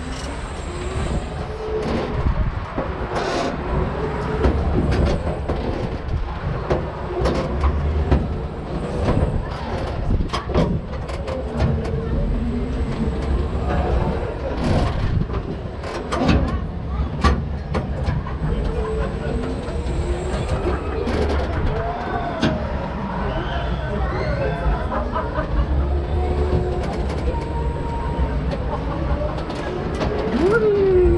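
Sunkid-Heege Jungle Loop swing ride in motion, heard from the seat: a low rumble that swells and fades as the gondola swings, with scattered knocks and wind on the microphone.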